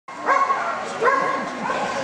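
A dog barking three times, about two-thirds of a second apart, at the start line of an agility run.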